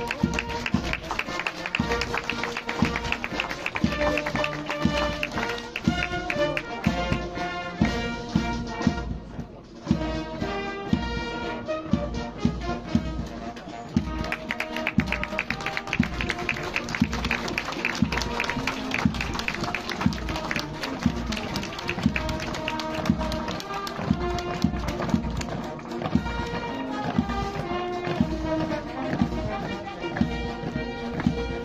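Military brass band playing a march with a steady drum beat. The music thins out briefly about nine seconds in, then carries on.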